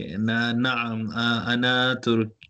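A man's voice speaking slow, drawn-out words at a nearly level pitch, almost chanted, like careful pronunciation practice of an Arabic phrase.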